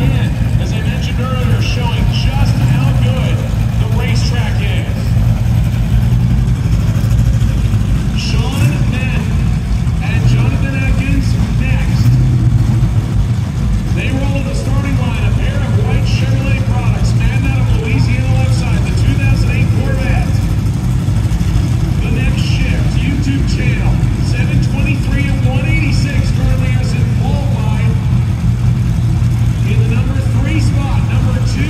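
Idling car engines making a steady low drone, with indistinct voices talking over it. There are no revs or passes.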